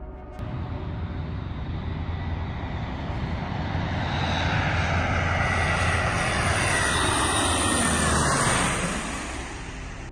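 Four-engine turboprop transport plane, a C-130 Hercules, flying low past: the engine and propeller roar builds over several seconds, drops in pitch as it passes, and fades near the end.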